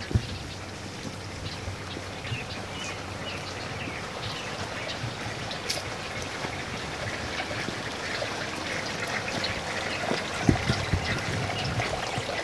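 Garden water running and trickling steadily, growing louder toward the end, with faint bird chirps over it and a couple of dull thumps, one just after the start and one near the end.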